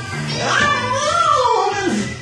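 A person singing a wordless vocal run that rises and then slides steeply down in pitch over about a second and a half.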